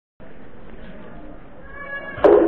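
Indistinct audience voices, faint and steady, with a few thin tones coming in near the end.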